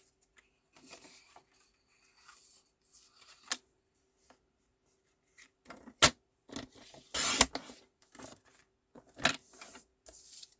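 Card stock being handled on a paper trimmer: a few sharp clicks, the loudest about six seconds in, and brief scraping slides of card and the cutting rail.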